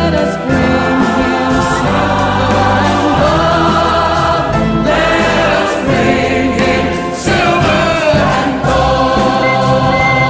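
A choir singing a Christmas song over instrumental accompaniment, with sustained sung notes and a steady bass line.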